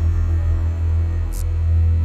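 Loud, steady low electrical hum, like mains hum, with a brief high hiss about a second and a half in.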